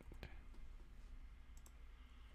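Near silence: faint room tone with a low hum and a few faint clicks.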